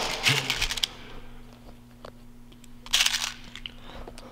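Short bursts of crinkly rustling from hands on the plastic spikes and thumbtacks of an acupressure mat, one near the start and another about three seconds in, over a faint steady low hum.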